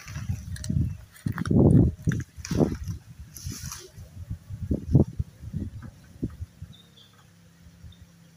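Irregular low thumps and rustling, loudest in a long burst about one and a half seconds in and a sharp one about five seconds in, with a brief hissing swish around three and a half seconds.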